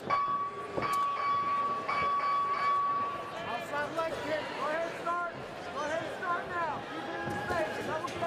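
A steady electronic horn tone sounds for about three seconds at the opening of the round and cuts off sharply, with a couple of sharp knocks under it. Voices then shout over the fight.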